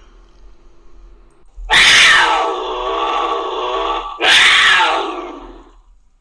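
Big-cat snarl sound effect, a cougar: two loud, rough snarls, the first about two seconds in and lasting over two seconds, the second shorter and fading out.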